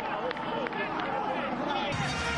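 Football match broadcast sound: a steady hubbub of indistinct voices from the pitch, without clear commentary.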